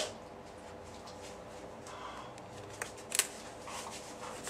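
Faint rustle of cardstock being handled and slid into place on a card base, with two brief sharper paper sounds a little after three seconds in.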